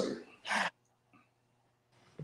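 A man's voice finishing a word over a video call, then a short breathy noise about half a second in, then near silence with a faint steady hum.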